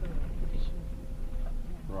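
In-cabin noise of a car driving along a rough sandy dirt track: a low rumble of engine and tyres, with uneven knocks and jolts from the bumpy surface.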